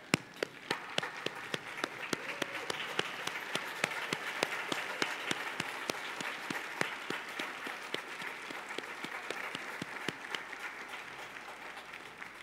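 A congregation applauding, swelling about a second in and easing off near the end. Over it, one pair of hands close to the microphone claps in a steady beat of about three claps a second, the loudest sound.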